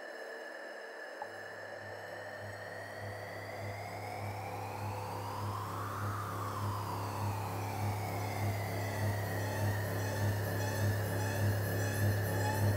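Eerie electronic horror film score. A low pulsing drone comes in about a second in, while high sweeping tones glide up and down above it, and the music slowly builds louder.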